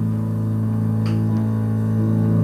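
Double bass played with the bow, holding a steady low drone.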